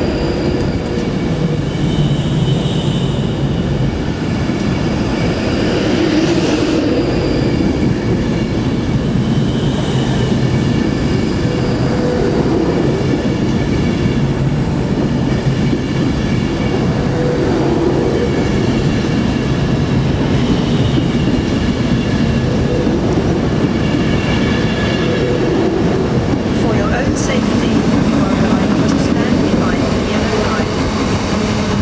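Avanti West Coast Class 390 Pendolino electric train running past along the platform: a loud, steady rumble of wheels on the rails with humming tones over it. There are a few short high-pitched squeaks near the end.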